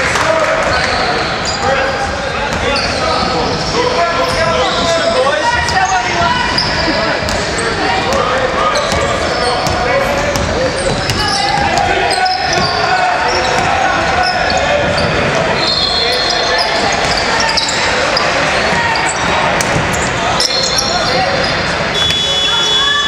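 Basketball game sounds in a large sports hall: a ball bouncing on the hardwood court amid indistinct shouts and chatter from players and spectators.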